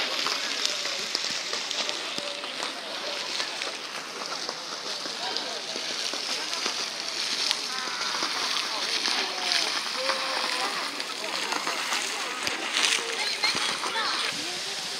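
Steady rush of running or splashing water, with people talking in the background.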